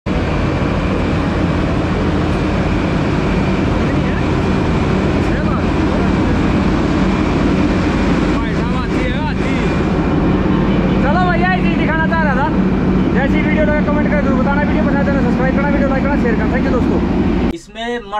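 Wirtgen WR 2400 road recycler's twin-turbocharged V8 engine running loud and steady at close range, with a strong low hum. Men's voices are heard over it from about halfway in, and the engine sound cuts off suddenly just before the end.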